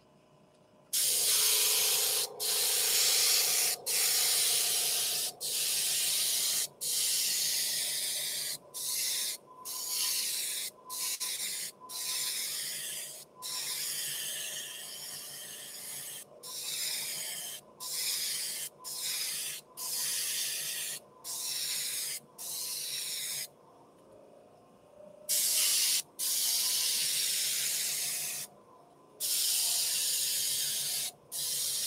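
Gravity-feed airbrush spraying paint in a long run of hissing bursts, each a second or two long, cut off briefly each time the trigger is let go. It starts about a second in and pauses for a couple of seconds about three-quarters through.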